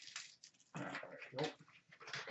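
Plastic wrapper crinkling and tearing as it is pulled off by hand, in irregular rustling bursts that are loudest about a second in.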